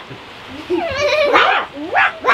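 Young livestock-guardian-dog puppy whining and yelping in high, wavering cries that start about half a second in. People's voices are mixed in.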